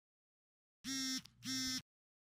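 Telephone ringing with a buzzy double ring: two short, steady tones close together, about a second in, the pair repeating about every two seconds.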